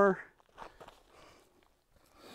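Faint footsteps scuffing on dry dirt ground, a few soft, uneven steps, after a man's voice trails off at the very start.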